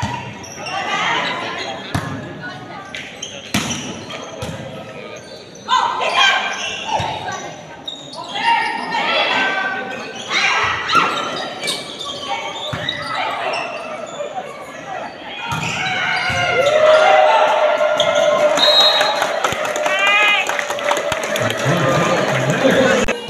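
Volleyball rally in an echoing gym hall: the ball is struck again and again, with players calling out. From about two-thirds of the way through, voices rise into sustained shouting as the point ends.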